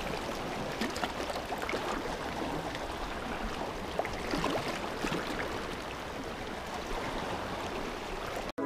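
Shallow sea water washing and lapping around coastal rocks: a steady wash broken by a few small splashes.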